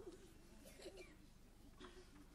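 Near silence: room tone with a faint, low wavering murmur.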